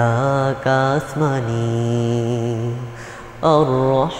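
A voice singing a Bangla Islamic nasheed in a chant-like style, drawing out long held notes that waver in pitch, then starting a new phrase near the end.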